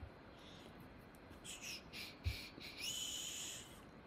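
Quiet room with a man's soft breaths, two faint hissy breaths about a second and a half apart, and a single soft low bump a little after two seconds in.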